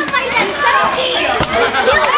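Several children shouting and chattering at once, high-pitched voices overlapping, with a few sharp knocks among them.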